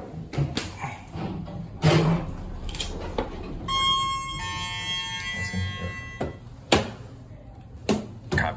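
Elevator's electronic arrival chime: two tones, the second lower, sounding about three-quarters of a second apart and fading over about two seconds. Around it come scattered clicks and knocks in the cab, the sharpest a little before the chime and near the end.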